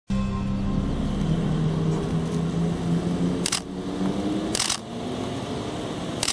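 Audi R8 prototype's engine running at low revs, its note rising slightly as the car moves off. Two short bursts of camera-shutter clicks cut in, about a second apart, after the midpoint.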